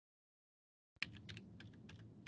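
Faint typing on a computer keyboard: a quick run of keystrokes starting about a second in, as a number is entered into a form field.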